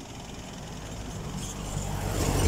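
A road vehicle approaching along the road, its engine rumble and tyre noise growing steadily louder.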